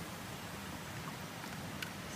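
Water hissing and sizzling on heated rocks, a steady even hiss with one faint click near the end.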